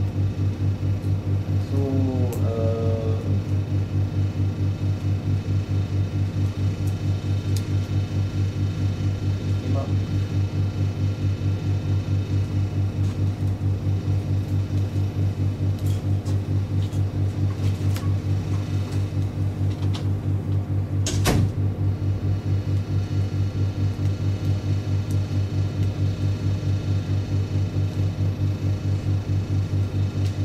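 Steady low room hum with a fast, even pulsing throughout. A brief voice sounds about two seconds in, and a single sharp click comes about twenty seconds in.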